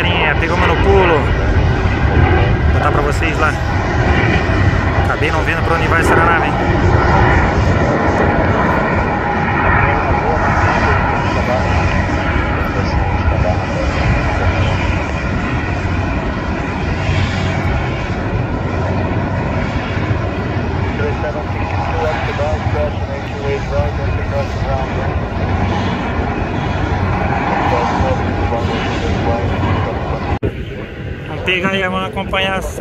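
Jet airliner's engines at takeoff power as it climbs out, a loud steady rumble that slowly fades.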